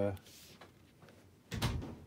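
A single brief thump with a rustle about one and a half seconds in, from a bagged and boarded comic book being handled; otherwise low room sound.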